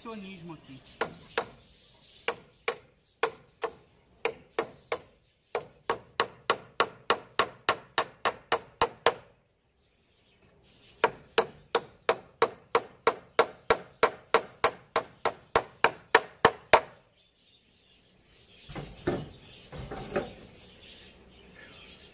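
Hammer driving nails into wooden stair formwork boards: two long runs of quick, sharp blows, building to about three a second, with a short pause between them.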